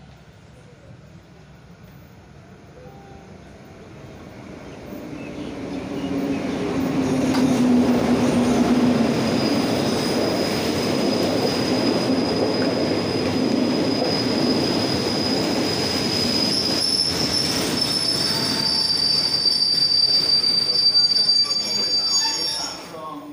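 A diesel-hauled passenger train pulling into a station platform: the rumble of wheels and coaches builds over a few seconds, then a steady high squeal as it brakes down to a stop.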